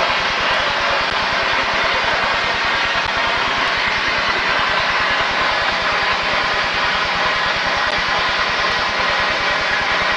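Steady hissing rush with a rough rumble underneath, unchanging throughout, from a steam locomotive standing with steam up close by.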